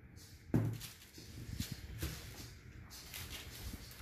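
A sneaker set down on a table: one knock about half a second in, followed by faint scattered clicks and handling noise.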